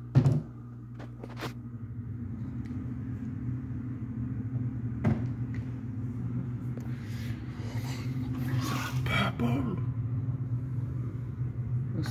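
A kitchen cabinet door shut with one sharp knock just after the start, followed by a few lighter clicks and handling sounds over a steady low hum.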